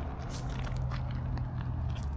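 Low rumble with faint crackling clicks from a handheld camera being moved about, under a steady low hum that starts just after the beginning.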